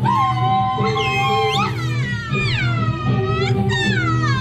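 Ecuadorian Andean folk dance music with a steady low accompaniment, over which high cries slide down in pitch several times.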